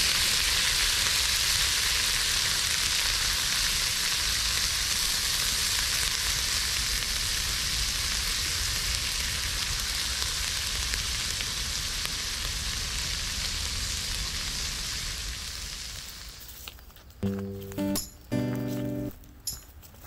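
Horumon (offal) and garlic-scape stir-fry sizzling steadily in a small square skillet on a grill over a campfire. The sizzle fades out about three-quarters of the way through, and music comes in near the end.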